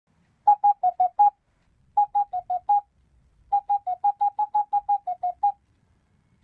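Electronic beep sound effect: short beeps about six a second at two alternating pitches, in three quick runs of five, five and then about a dozen, with pauses between, like a game's talking-text blips.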